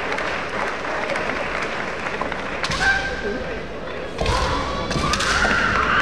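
Kendo bout: sharp clacks of bamboo shinai and a hard stamp of a foot on the wooden floor about three seconds in, then a long, high kiai shout from a fencer starting about four seconds in.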